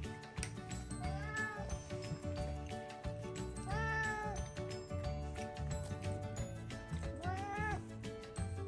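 A domestic cat meowing three times, each a short arched call, about a second in, in the middle (the loudest) and near the end, begging for food at the table. Background music plays under the calls.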